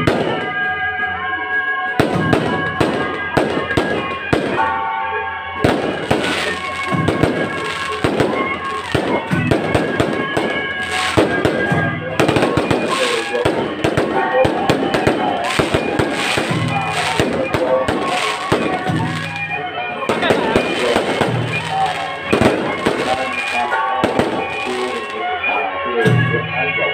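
Strings of firecrackers crackling in a rapid, continuous run from about two seconds in, with a brief break partway through, over music.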